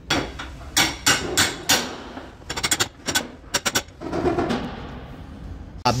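Slide hammer dent puller being worked on a car body panel: its sliding weight strikes the stop in a string of sharp metallic knocks, some in quick runs, over the first four seconds.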